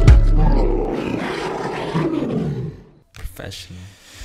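The intro music's final low note rings out under a loud, rough roar that fades away by about three seconds in.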